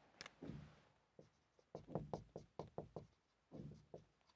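Marker pen writing on a whiteboard: a run of faint, short taps and strokes.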